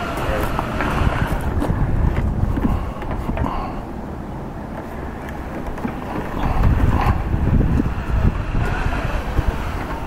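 Wind buffeting the microphone: a low, uneven rumble that swells and fades, louder about a second in and again around six to seven seconds in. Faint voices sit underneath.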